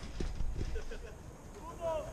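Footsteps of several players running on artificial turf as a light patter of taps, with faint shouting from across the pitch and one short call near the end.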